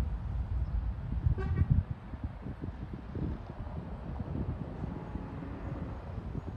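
A NOHAB diesel locomotive's horn gives one short, distant toot about a second and a half in. Wind rumbles on the microphone throughout.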